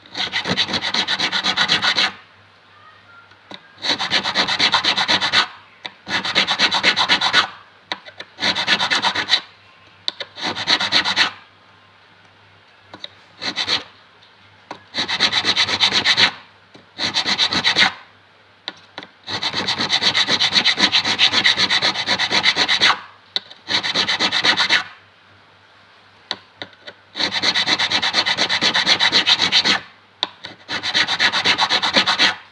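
Fret file rasping back and forth across an acoustic guitar's metal fret, crowning it. The strokes come in bouts of about one to three seconds with short pauses between.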